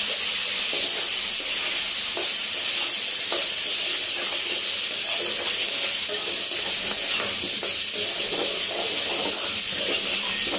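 Potato wedges and spring onion stalks sizzling steadily in hot oil in an aluminium kadai, with a metal spatula repeatedly scraping and stirring against the pan.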